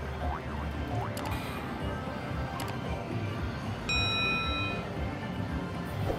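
Huff N' More Puff slot machine spinning its reels to its game music, with a few sharp clicks as the reels stop. A steady electronic chime, about a second long, sounds around four seconds in.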